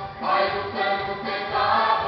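Mixed youth choir singing a Christian hymn in unison, with electronic keyboard accompaniment.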